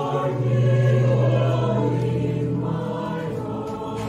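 Mixed choir of men's and women's voices singing long, held chords. A strong low note under the chord stops about three seconds in.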